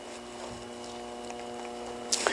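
A faint steady hum made of several held tones, with a couple of faint clicks.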